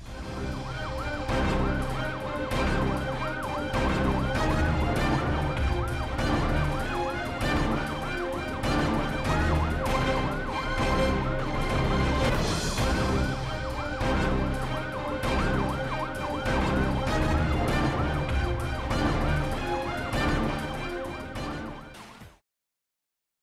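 Theme music with a steady pounding beat and a fast, repeatedly wailing police-siren sound woven through it. It cuts off abruptly at the end.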